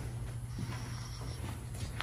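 A steady low hum with faint shuffling movement noise.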